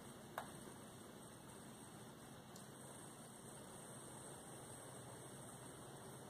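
Near silence: faint steady room hiss, with one brief faint click about half a second in.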